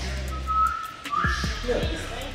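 Hip-hop beat with deep, steady bass and a few kick-drum hits, over which a thin, high whistling tone holds for about half a second and then comes back a step higher.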